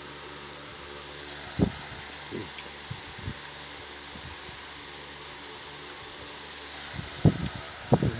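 A steady low motor hum, such as a running electric fan. Over it come a few short knocks and bumps, the loudest about one and a half seconds in and two more close together near the end.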